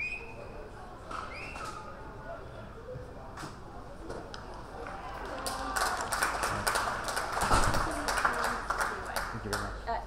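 Two short high whistle tones in the first couple of seconds, then a burst of shouting voices from players and spectators mixed with sharp claps or knocks. It builds to its loudest about three quarters of the way through and eases off near the end.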